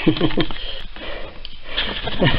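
A man's short laugh trailing off in a few falling syllables, then sniffing and breathy noise.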